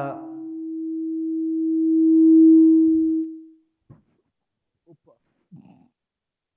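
PA microphone feedback: one steady hum-like tone that swells to its loudest about two and a half seconds in, then dies away after about three and a half seconds. A few soft knocks follow.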